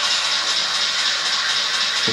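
Steady rushing hiss of an animated energy-blast explosion sound effect.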